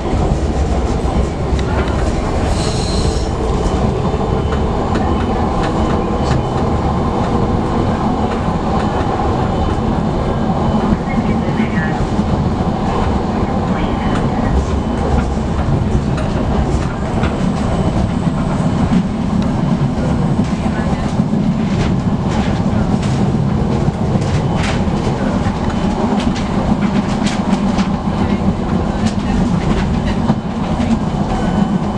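Heard inside the carriage, a Budapest HÉV suburban train runs at speed with a steady rumble of wheels on the rails and the clickety-clack of rail joints, the clicks coming thicker in the second half. A brief high squeal comes about two to three seconds in.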